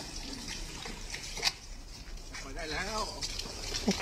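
A pause in speech filled by low room noise and hiss, with a faint, brief voice murmuring about two and a half seconds in.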